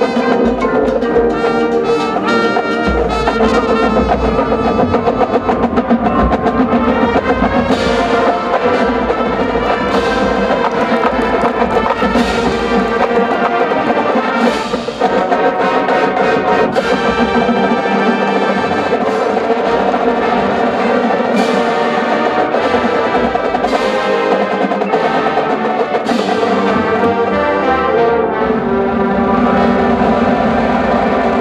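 College marching band playing: full brass section over drums, with heavy low drums in the first half and sharp accented hits through the rest, and a brief drop in level about halfway.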